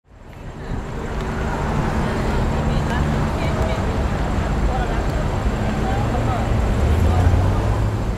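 City street ambience: a steady traffic rumble with indistinct voices in the background, fading in at the start.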